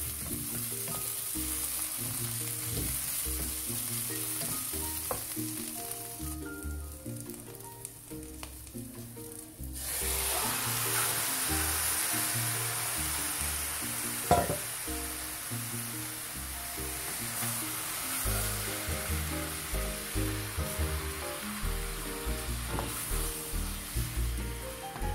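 Onions, dried chilli and then squid sizzling in a stainless steel frying pan as they are stirred with a wooden spatula. The sizzle drops away for a few seconds about a third of the way in and comes back stronger, with one sharp knock a little past halfway; background music plays underneath.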